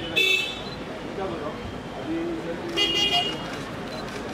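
Vehicle horn tooting twice, once briefly and then a longer toot about two and a half seconds later, over background voices.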